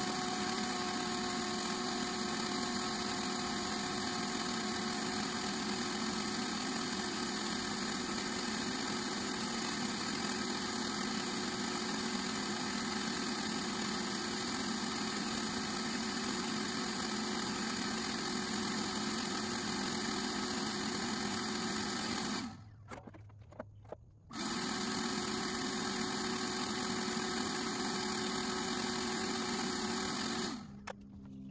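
Ridgid wet/dry shop vacuum running steadily, its hose sucking loose debris out of the inside of an AC condenser unit. The sound cuts out for about two seconds about three quarters of the way through, then resumes unchanged.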